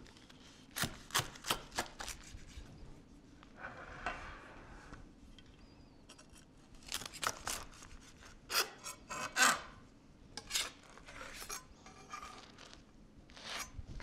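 Knife sawing through the crisp, grill-pressed ciabatta crust of a panini: a run of short, crunchy rasping strokes with pauses between them.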